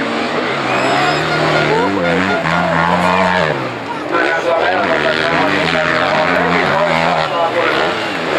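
Enduro motorcycle engines revving under load, the pitch climbing in steps and holding, then falling away about three and a half seconds in. After that they rev unevenly, rising and falling.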